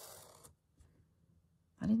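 A marking pen drawn along a metal ruler across cotton fabric, one short scratchy stroke lasting under a second at the start. The pen is heat-erasable, for guide lines that are ironed away.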